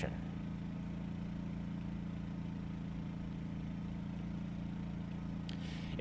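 A steady low engine hum, like an idling engine, with a faint hiss over it.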